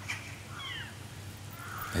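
A bird calling in the background, two short falling chirps about half a second in, over a low steady hum.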